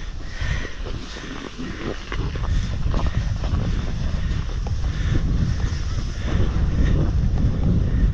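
Wind buffeting the microphone of a camera carried by a rider on a moving snowboard, with the board sliding over snow. The low rumble grows stronger about two seconds in, as the board picks up speed.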